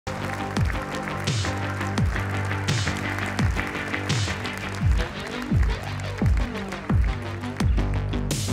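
Music with a steady beat: a deep kick drum that drops in pitch on each beat, about every three-quarters of a second, over held chords, with occasional swells of cymbal-like hiss.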